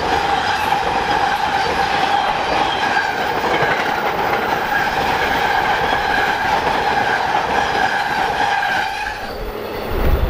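Amtrak passenger train cars passing at speed, a steady rush of wheels on rail with a steady whine running through it. The noise falls away about nine seconds in as the last car goes by.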